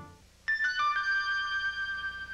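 The closing theme music fades out, and about half a second in comes the Procter & Gamble Productions logo chime: a few quick electronic notes, mostly stepping down in pitch, that ring on and slowly fade.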